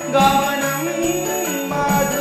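A man singing a devotional song over instrumental accompaniment, his voice sliding between held notes, with a light jingling in the backing.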